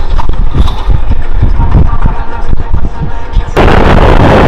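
Military jet engine rumbling and crackling, low and gusty. Shortly before the end it cuts abruptly to the loud steady roar of the Thunderbirds' F-16 jets passing in formation.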